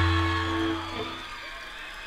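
A rock band's last chord held on electric guitar and bass through the PA, fading out over about a second, then only faint crowd noise.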